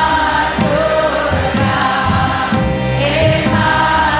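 Choir chanting a slow devotional mantra over music, with held notes that change pitch about once a second and a steady low beat beneath.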